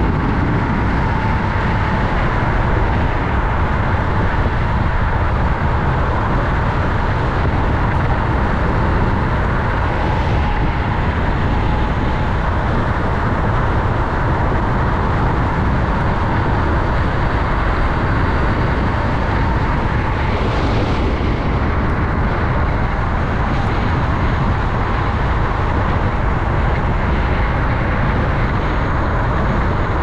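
Steady wind noise over an action camera's microphone on a Dualtron Thunder electric scooter riding at speed, with a faint steady high whine.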